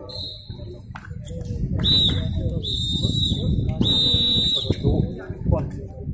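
A whistle blown in four blasts: a brief one at the start, then three more about two to five seconds in, the last two held about a second each, all on one high steady pitch. Low crowd chatter runs underneath.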